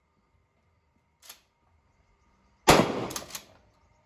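A single shotgun shot about two and a half seconds in, sudden and loud, with a short ringing decay.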